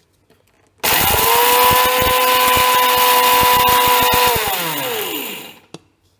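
Electric mixer grinder grinding roasted whole spices in its stainless steel jar. The motor starts abruptly about a second in and runs with a loud, steady whine over the rattle of spices hitting the jar for about three and a half seconds, then is switched off and winds down with a falling whine.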